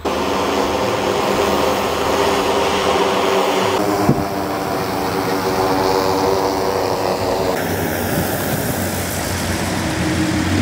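DJI Matrice 350 RTK quadcopter's propellers buzzing steadily as the drone comes down to land, a stack of steady tones that shift slightly in pitch. The sound changes abruptly twice, about four and seven and a half seconds in.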